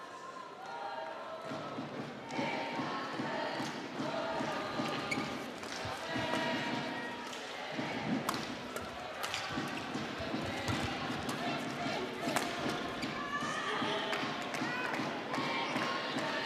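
Badminton doubles rally: sharp racket strikes on the shuttlecock, roughly one every second, with shoes squeaking on the court, over a murmur of crowd voices.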